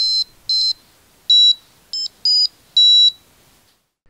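Piezo speaker of a capacitive-touch piano necktie beeping short, high-pitched notes as its conductive-tape keys are touched. There are six notes of a little tune at slightly different pitches, stopping about three seconds in.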